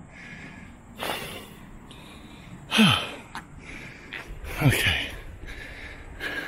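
A man breathing hard, puffing from walking up a steep path: a loud breath about a second in, then two sighing exhales that slide down in pitch, at about three and five seconds.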